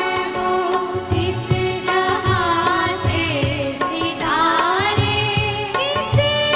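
Women's voices singing a Hindi film song live, with orchestra accompaniment and a steady drum beat.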